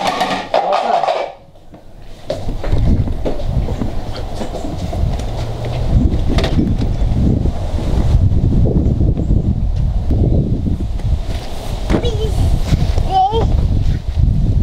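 Wind buffeting the camera's microphone outdoors, a loud, continuous low rumble with handling bumps as the camera is carried along.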